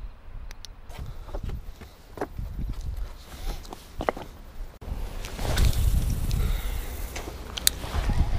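Footsteps and gear handling on shoreline rocks: scattered scuffs, clicks and knocks. From about halfway in, a louder low rushing noise takes over.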